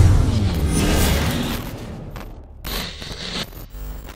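Trailer sound effects: a deep cinematic boom at the start that fades away over about two seconds, then short glitchy crackling bursts near the end that stutter and cut off.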